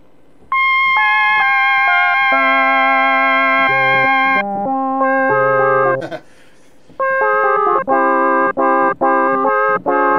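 Roland Boutique JU-06 synthesizer preset played as polyphonic chords on a keyboard. Held chords that change every second or so begin about half a second in and stop about six seconds in. After a short pause comes a run of short, repeated chord stabs.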